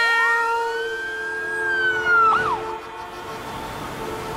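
A siren-like wailing tone that rises over about a second, holds, then falls away with a brief wobble a little over two seconds in, over a steady lower tone.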